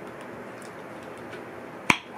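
Lid of a new sauce jar popping open with a single sharp pop near the end, the sound of the jar's seal breaking.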